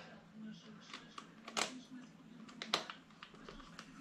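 Light scattered clicks and taps of plastic RC truck parts handled by hand as the wheels are fitted back onto the axles, with two sharper clicks about a second and a half and nearly three seconds in.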